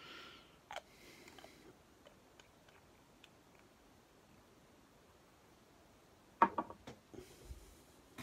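Faint handling sounds at a fly-tying bench: a few small ticks and taps, then a short cluster of sharp clicks about six and a half seconds in.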